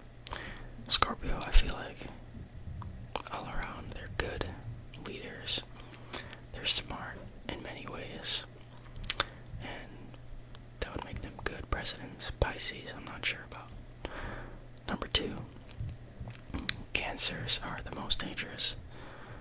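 Close-miked whispering, with sharp mouth clicks between the words.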